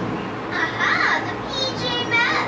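A cartoon's soundtrack playing from computer speakers: a character's voice with pitch rising and falling about a second in, and higher-pitched voices near the end, over background music.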